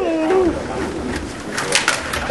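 A short hooted voice sound at the start, then the clatter of a Stiga rod table hockey game: rods and plastic players knocking, with a few sharp clicks near the end as the goal is scored.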